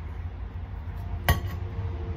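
A single sharp metallic clink from a stainless-steel water bottle a little over a second in, as drinking from it ends, with a short ring after it. A steady low hum runs underneath.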